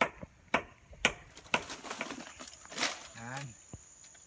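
Machete chopping into bamboo stems: a run of sharp strikes about every half second.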